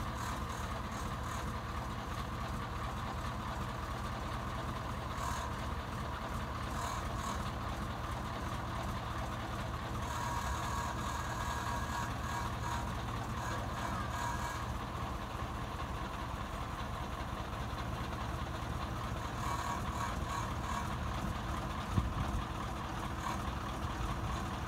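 Diesel engine of a MAN KAT 1A1 6x6 truck running steadily, with a single sharp knock near the end.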